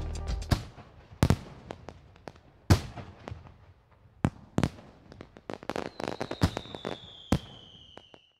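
Fireworks going off: sharp bangs at irregular intervals, about seven loud ones, with smaller crackles between them, and a thin whistle sliding slowly down in pitch near the end. Music fades out at the very start.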